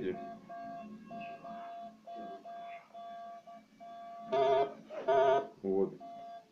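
Metal detector beeping: a steady mid-pitched tone that comes in short pulses, then two louder, buzzier tones about four and five seconds in.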